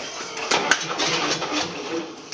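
Starter cranking a naturally aspirated Cummins 5.9 diesel on a first start attempt, with irregular sharp knocks beginning about half a second in.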